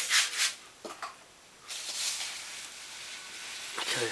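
Toshiba SM-200 music centre switched to AM radio with no antenna connected. A few short clicks and rustles come in the first half-second as the controls are worked. From a little under halfway through, a steady hiss of radio static with no station.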